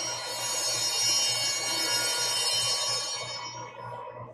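Altar bells ringing at the elevation of the host, signalling the consecration; a bright, many-toned ring that dies away near the end.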